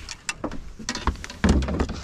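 A run of sharp knocks and clicks, then louder low bumps and rumbling about halfway through: handling noise and knocks on a fishing boat's deck as the camera is moved about.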